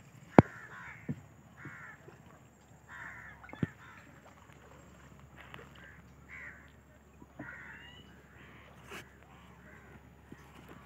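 Birds calling over and over in short, repeated calls, with a few sharp knocks from the boat, the loudest about half a second in.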